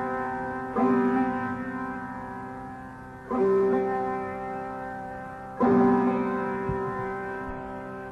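Sarod played slowly in the alap. Single plectrum strokes come about every two to three seconds, three in all, and each note rings on and fades slowly over a steady drone of sustained strings. No tabla is heard.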